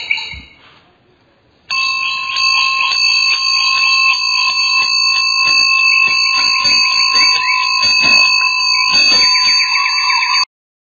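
Steady electronic tones: several high pitches held together over a regular pulsing pattern, starting about two seconds in and cutting off abruptly just after the end.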